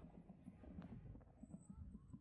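Faint, uneven low rumble of wind and road vibration picked up while riding an electric kick scooter, with a single small click just under a second in.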